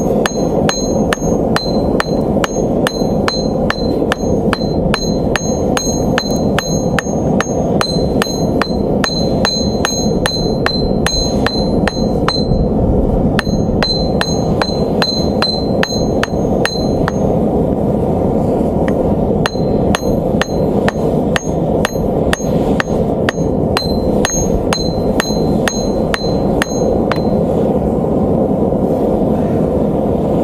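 Hand hammer striking the top end of a hot steel bar held upright in tongs on a thick steel plate, upsetting the bar to thicken it: a steady run of about three blows a second, each with a short high metallic ring, thinning out for a couple of seconds just past the middle. A steady rushing noise runs underneath.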